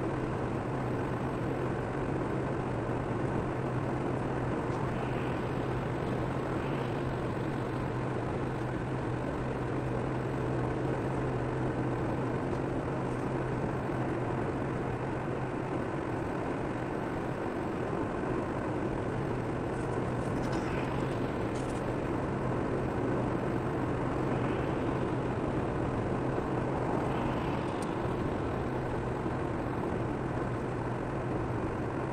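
Steady road and engine noise inside a car cruising at about 90 km/h on a motorway: an even tyre rumble over a low, constant drone.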